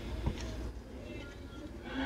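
Low steady room hum with faint handling of a trading card as it is flipped over in the hands, with one small click about a quarter second in.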